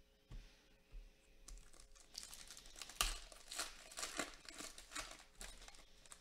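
Foil wrapper of a Donruss Optic basketball card pack being torn open and crinkled by hand. A few soft rustles come first, then a run of crackling crinkles about two seconds in, loudest about a second later.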